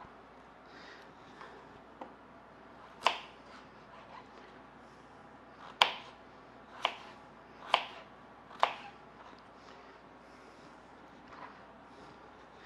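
Kitchen knife chopping a peeled potato on a plastic cutting board: five sharp knocks of the blade through the potato onto the board, the last four about a second apart, with faint handling sounds between.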